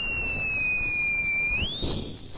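A man's two-finger whistle: one long shrill note that sags slightly, then sweeps up in pitch near the end.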